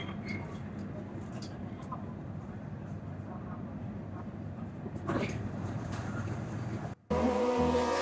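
Steady low hum of a C751C metro train standing at a station, heard from the front of the car, with faint voices and a brief louder rustle about five seconds in. Near the end it cuts out suddenly and pop music with a beat starts.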